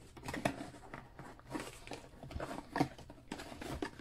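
Corrugated cardboard mailer box being handled, lifted and tipped up: a scattered run of soft taps, scrapes and rustles.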